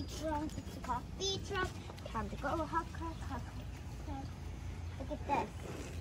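Quiet, distant chatter of children's voices, in short snatches.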